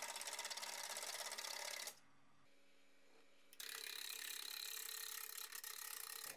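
Wood lathe turning a wood blank with a turning tool cutting the spinning wood: a steady, fast, fine ticking. It stops for about a second and a half about two seconds in, then resumes.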